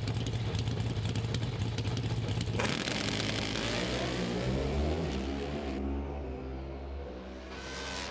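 Two Pro Stock Motorcycle drag bikes hold steady revs on the starting line, then launch about two and a half seconds in. Their engines rise in pitch in steps through quick gear changes and fade as the bikes run away down the track.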